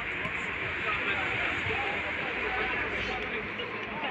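Indistinct distant voices, several at once, over a steady outdoor background noise.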